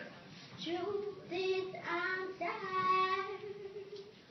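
A young girl singing unaccompanied, starting about half a second in, with long held notes, the longest near the end.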